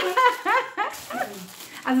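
A woman laughing in a run of short, pitched bursts that rise and fall and die away over about a second and a half.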